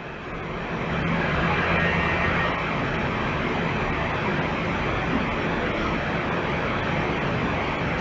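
A steady rushing noise with a low hum under it. It swells over the first second and then holds level.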